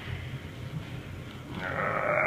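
Faint low rumble, then a person's drawn-out hummed vocal sound that starts near the end and holds steady.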